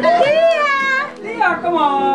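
Several people's excited, high-pitched voices calling out over one another.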